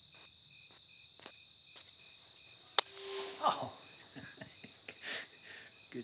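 Crickets chirping steadily in a regular rhythm, broken about three seconds in by the single sharp crack of an air rifle shot at a rat. A short, muffled rustling noise follows the shot.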